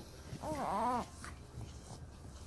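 A newborn baby's brief whimper, about half a second long, rising then falling in pitch.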